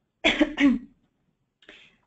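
A woman coughs, a short double cough with two quick bursts, followed near the end by a faint breath in.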